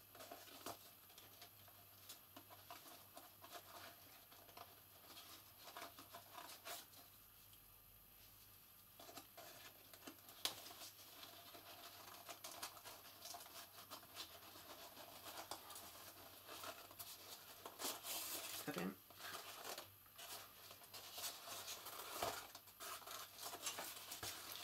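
Faint rustling and small clicks of card and ribbon being handled as ribbon is threaded through holes in a card box and knotted, with a few louder rustles near the end.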